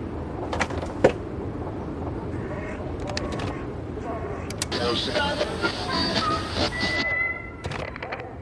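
A radio receiver switched on with two short beeps, then hissing with static and garbled voice-like sounds as it is tuned, ending in a brief steady whistle. A sharp knock sounds about a second in.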